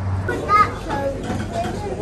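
Children's voices chattering indistinctly, with one louder, high-pitched voice about half a second in.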